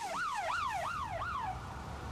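Police siren on a yelp setting, its pitch sweeping up and down about three times a second, fading away about one and a half seconds in.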